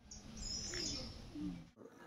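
Birds chirping high over faint outdoor ambience.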